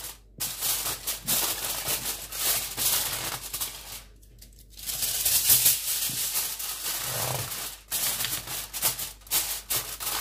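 Aluminium foil crinkling and rustling as it is pressed and crimped around the rim of a baking dish. It comes in rapid irregular crackles, with a short pause about four seconds in.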